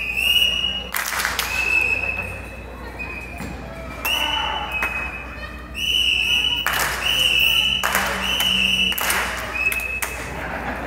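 A high whistle blown in a run of held notes on nearly the same pitch, some short and some about a second long, with brief noisy bursts between several of them.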